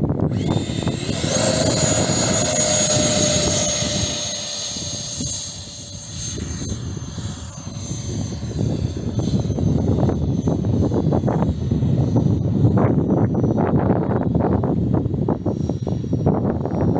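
90mm electric ducted fan of a model jet run up to full power for takeoff: a loud rushing roar with a steady high whine that starts right away. The roar fades in the middle as the model climbs away, then a gusty low rumble of wind on the microphone takes over.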